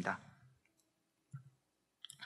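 The end of a man's spoken word in Korean, then a pause of near quiet with one faint click a little over a second in.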